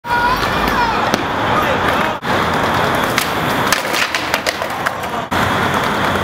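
Skateboard wheels rolling over concrete pavers, a steady gritty rumble, broken by several sharp clacks of the board.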